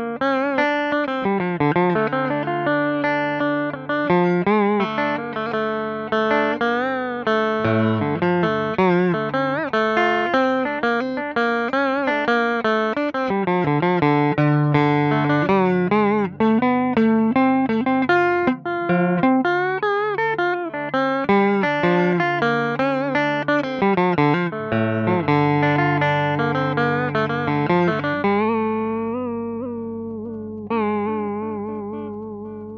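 Scalloped-fretboard Stratocaster-style electric guitar playing a solo single-note melody, picked, with many notes bent and shaken in wavy vibrato. Near the end the last note rings out and fades.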